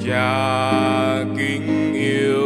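Vietnamese Christian worship song: a solo singer with piano accompaniment, a note held through the first second or so.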